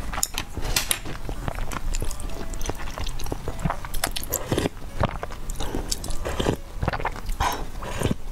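Close-miked mouth sounds of a person chewing noodles and sipping soup broth from a spoon: irregular wet smacks and clicks.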